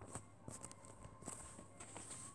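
Plastic VHS clamshell case being handled and opened: a few faint clicks and taps, spread unevenly.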